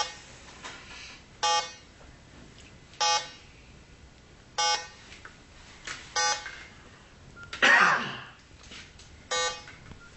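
Eliminator LS3000 electronic refrigerant leak detector beeping at a slow, even pace, one short tone about every one and a half seconds, the slow pulse rather than the fast one that signals gas. Late on, a single louder, rough burst of noise cuts in over it.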